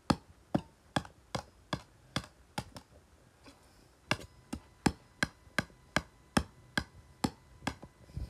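A rapid series of sharp taps or strikes, about two to three a second, pausing briefly about three seconds in before carrying on.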